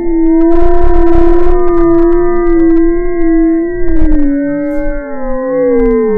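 Heavily edited, electronically warped audio: a loud, held, howl-like tone with overtones that slides lower in the last two seconds. A burst of hiss comes in during the first second, and a few clicks about four seconds in.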